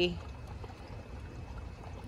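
Steady trickle of water running through an aquaponics system.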